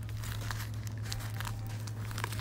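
Packaging being handled as a candle-making kit's box is opened and a clear plastic zip-top bag of scented granules is pulled out: irregular crinkling and crackling of plastic and cardboard. A steady low hum runs underneath.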